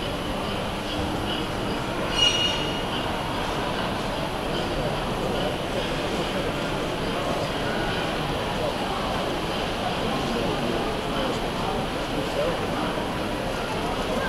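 Busy exhibition-hall hubbub of many people talking at once, with a brief shrill high-pitched sound about two seconds in.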